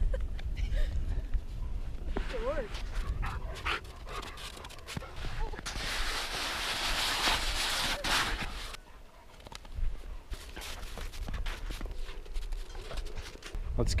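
A black Labrador retriever panting. In the middle comes a few seconds of loud crunching and scraping of boots on coarse, granular snow, with scattered footstep crunches around it.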